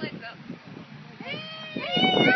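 A high-pitched voice calling out in long tones that rise and fall, starting a little past halfway, after a quieter stretch of faint background noise.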